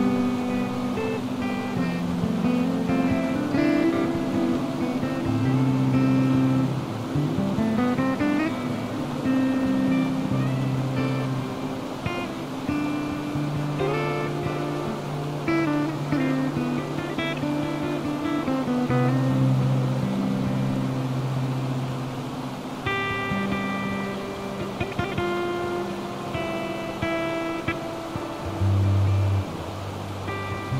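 Background music: plucked acoustic guitar over long, held low bass notes.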